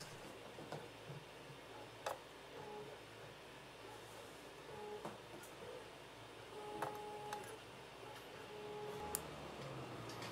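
Quiet handling of a thin nickel strip and spot-welder probe leads: a few faint clicks and several short, soft beeps.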